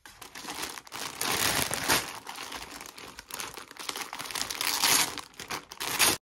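Paper and clear plastic packaging crinkling and rustling as a clothing parcel is opened and the wrapped knit cardigan handled. It is loudest about two seconds in and again near the end.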